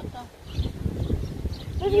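Wind buffeting the microphone as a rough, uneven low rumble, with faint voices over it and a voice starting near the end.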